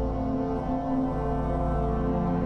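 Background score music: slow, sustained low chords held steadily.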